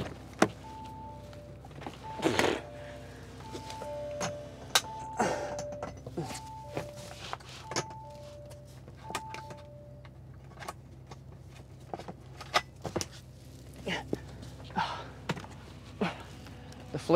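A faint electronic two-note chime, high then low, repeating about every second and a half for roughly ten seconds, with scattered clicks, knocks and a couple of short rustles.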